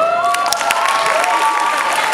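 Audience applauding and cheering, with several long, high-pitched shouts held over the clapping.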